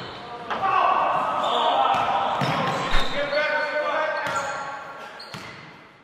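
Indistinct voices and the sharp knocks of a basketball bouncing, echoing in a large room; the sound fades out toward the end.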